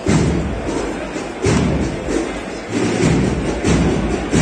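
Procession band music from an agrupación musical, with four deep bass drum beats over continuous drumming and playing.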